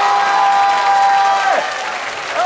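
A man's voice holds one long high note that drops away about a second and a half in, over studio audience applause and cheering.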